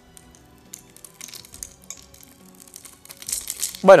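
Blade cutting into a bar of soap: faint crisp clicks and crackles as small cubes break away, turning into a louder, denser crunchy scrape near the end.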